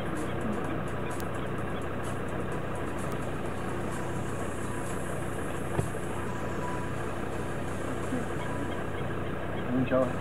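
Vehicle engine idling steadily, with a single sharp knock about six seconds in.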